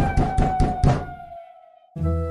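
A rapid run of about five knocks on a door, about a fifth of a second apart, in the first second, over a held musical note that slowly sinks and fades.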